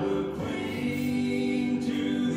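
A gospel song with singing voices holding long notes.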